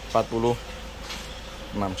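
A man's voice in two short bits, one just after the start and one near the end. Between them is a faint, steady, thin hum.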